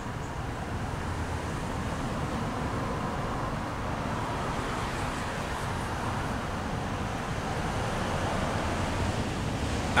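Steady traffic noise from nearby streets, a continuous even rumble and hiss with no distinct events.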